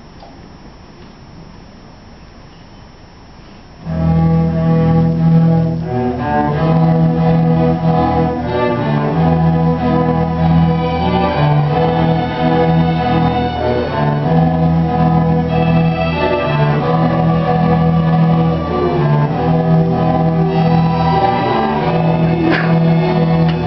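Middle school string orchestra of violins and cellos coming in together about four seconds in, after a quiet pause, and playing steadily. It is a slow, march-like opening built on long held low notes.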